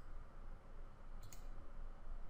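A single faint computer mouse click a little past the middle, over quiet room tone.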